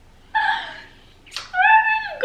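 High-pitched excited squeals from a woman: two held, wordless, squeaky cries, with a short sharp smack-like sound just before the second.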